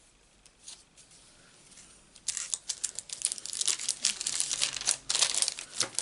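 A plastic sheet of self-adhesive craft gems crinkling and crackling as it is handled, starting a little after two seconds in and going on for several seconds as a dense run of sharp crackles. A few faint ticks come before it.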